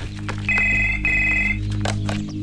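Telephone ringing with two short trilling rings, one straight after the other, over a low steady hum.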